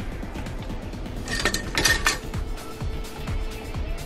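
Background music with a short cluster of clinks, a utensil knocking against a container, about a second and a half in.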